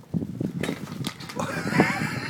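Lurcher x saluki cross puppy giving a high, wavering whine through the second half.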